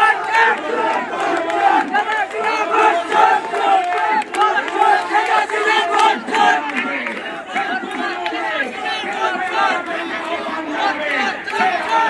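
A crowd of protesters shouting slogans together, many voices overlapping.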